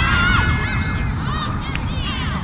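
A chorus of overlapping honking calls, each a short rise and fall in pitch, as from a flock of geese, over a low rumble.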